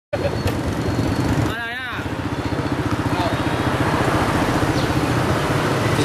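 Small motorbike engine running steadily close by, with a rapid, even low pulse. A short wavering tone breaks in about a second and a half in.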